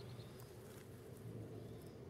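Faint outdoor ambience: a steady low rumble with no distinct events.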